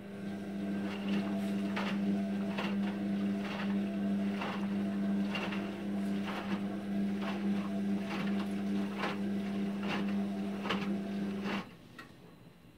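Indesit IWD71451 front-loading washing machine turning its drum during a Cottons 60 wash: the drive motor hums steadily while the wet laundry drops in the drum about once a second. The motor cuts off suddenly near the end as the drum stops turning.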